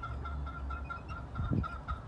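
A hen with young chicks: one short low cluck about one and a half seconds in, over a steady, rapidly pulsing high note in the background.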